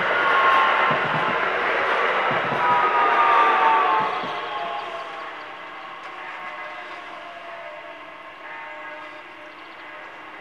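Electric multiple unit passing over a level crossing: loud rolling noise with wheel knocks on the rail joints, then fading quickly about four seconds in as the train clears. A thin whine falls slowly in pitch throughout as the train moves away.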